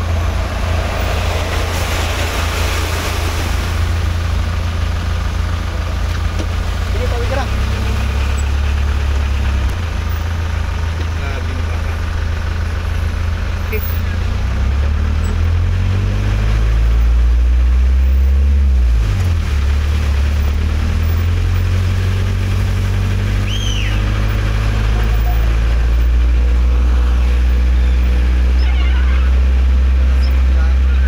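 Vehicle engine heard from inside the cab as a steady low hum. In the middle its pitch rises, dips sharply and climbs again as the engine speed changes, then it settles into a louder steady hum.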